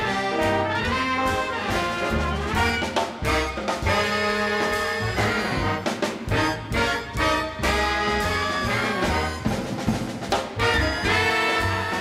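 A recorded big-band jazz track played over loudspeakers: the horn section plays a swinging arranged ensemble passage, with no solo in it.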